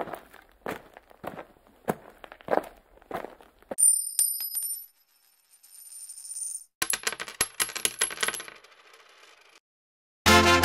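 A run of sharp metallic clicks, about one every half second, then two short high metallic rings like coins falling and ringing on a hard surface.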